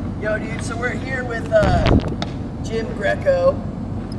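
Indistinct voices of people talking, with a loud low rumble about halfway through.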